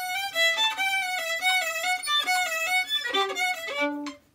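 Solo violin played with the bow: a passage of quick separate notes, about four or five a second, that stops just before the end.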